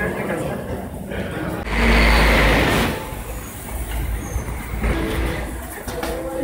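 Busy bus-station ambience: a crowd's chatter and footsteps echoing in a passage, with a loud rushing noise about two seconds in that lasts about a second.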